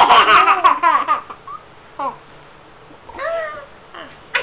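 A toddler and a woman laughing together: a loud run of laughter in the first second, then short laughs about two and three seconds in.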